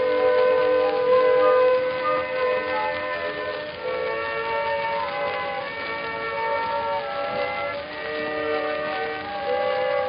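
Instrumental passage of an acoustic-era 1919 record: the accompanying orchestra plays held melody notes that change every second or so, with no singing. The sound is narrow and thin, with no treble.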